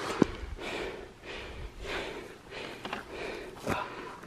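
A man breathing hard in a series of heavy puffs, about one a second, as he strains to lift a bull elk's head and cape onto his shoulders, with a brief sharp knock just after the start.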